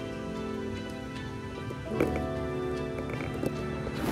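Background music of slow, sustained chords, with a new chord coming in about halfway and a few light clicks.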